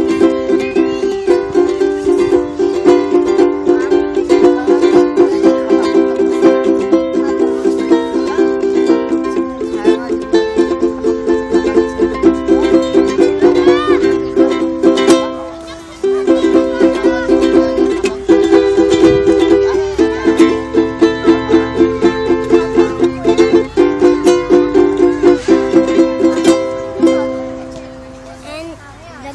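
Ukulele strummed in a steady rhythm, moving through chord changes every few seconds as a chord-change practice run. The strumming stops briefly about fifteen seconds in, then picks up again.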